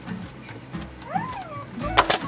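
A pneumatic framing nailer fires once at the very end, a sharp crack and the loudest sound. A little past the middle, a short whine rises and falls in pitch over low background sound.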